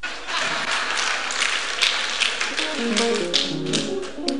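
Congregation applauding, a dense clatter of many hand claps. Over the last second and a half a faint pitched sound steps upward over the clapping.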